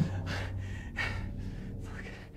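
A person breathing heavily in a few gasping breaths, over a low steady hum.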